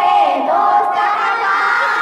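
A group of voices singing a naat, an Urdu devotional song, together, holding long notes that bend in pitch.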